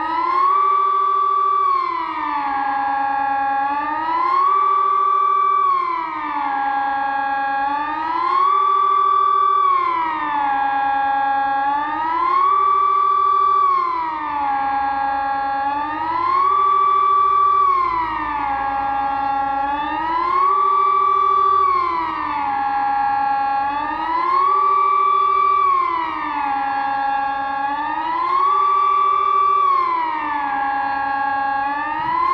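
Sonnenburg SES 1000 electronic siren sounding the Swiss 'General Alarm' (Allgemeiner Alarm) as a test. The tone rises and falls about every four seconds, holding briefly at the top and bottom of each swing.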